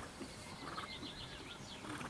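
A small bird singing a quick trill of repeated short high notes about a second in, over steady outdoor background noise.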